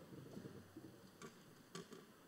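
Near silence: room tone, with two faint clicks about half a second apart in the second half.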